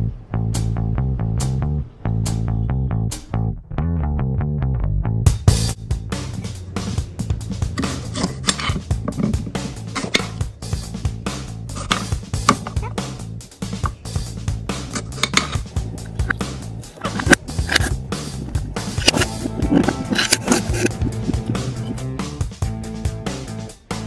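Background music with bass and guitar. From about five seconds in, a fast, irregular run of sharp knocks joins it: a knife chopping apple on a cutting board.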